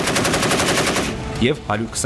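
A 7.62 mm tank machine gun firing one rapid burst of about a second, many shots close together.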